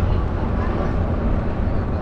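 Steady low wind rumble on the microphone from riding an electric bike along a paved path.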